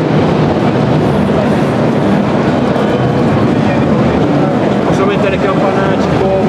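Loud, steady din of a crowded music trade-fair hall, with voices in it.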